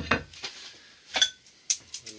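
A china dinner plate set down on a wooden chopping board with a knock. Two short, sharp clinks of kitchenware follow, about a second and a second and a half later.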